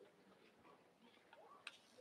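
Near silence: quiet hall room tone with a few faint scattered clicks and one sharper click near the end.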